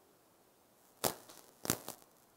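Two short, sharp clicks about two-thirds of a second apart, with near silence otherwise.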